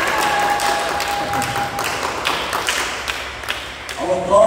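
A small group clapping hands, irregular and scattered, with one held high note for about a second and a half near the start.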